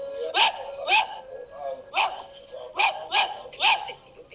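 A dog barking: six short, sharp barks at uneven intervals, two close together early on and four more in the second half.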